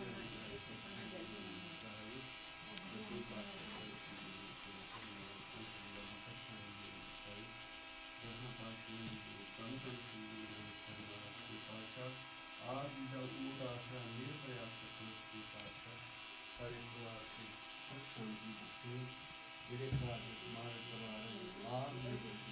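Quiet, indistinct voices over a steady electrical buzz in a small room, with a few louder voice bursts about halfway through and near the end.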